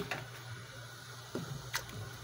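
Quiet room noise with a faint steady hiss, broken by two soft clicks about a second and a half in.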